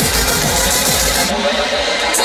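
Electronic dance music from a DJ set played loud over a festival sound system, with a steady kick-drum beat. About two thirds of the way in, the bass and the highest treble drop out and the music thins.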